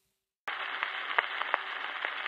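Surface noise of a 78 rpm shellac record after the recorded music has ended. A steady, muffled hiss starts suddenly about half a second in and is scattered with irregular clicks and crackles.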